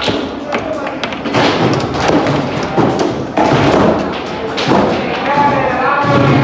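Foosball table in play: a rapid, irregular series of knocks and thuds as the ball is struck by the plastic players and the rods bang against the table.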